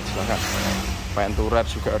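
A motor vehicle's engine running nearby, a steady low hum with a continuous low rumble under a man's speech.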